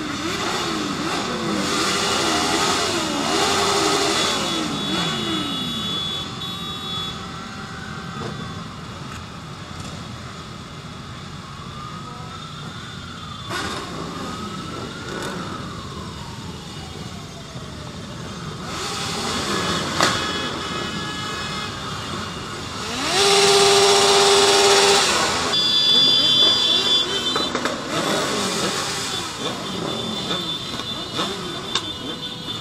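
A pack of motorcycles running together in traffic, several engines revving and rising in pitch one after another in the first few seconds, then a steadier run. About three-quarters of the way in, a horn blares for about two seconds, the loudest moment, and a shorter horn beep follows.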